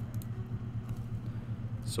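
Steady low hum of background noise picked up by the microphone in a pause between words; a spoken word begins near the end.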